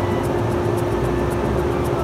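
Steady electrical hum of a stationary 113-series electric train, one held tone over a low rumble, with background music and a light beat over it.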